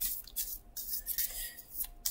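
A deck of oracle cards being shuffled by hand: a few soft, irregular swishes of cards sliding against one another.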